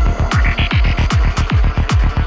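Dark psytrance: a rolling bassline of fast bass notes, each dropping in pitch, about eight a second, under crisp hi-hat strokes and short synth blips.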